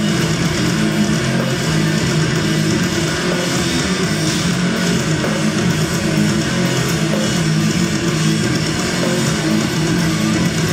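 Heavy metal band playing live, with heavily distorted, down-tuned eight-string electric guitars and drums in an instrumental passage with no vocals. The sound is loud and dense, heard from within the audience.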